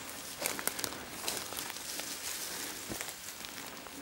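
Footsteps on the forest floor: irregular rustling with small crackles of twigs and dry litter underfoot while walking.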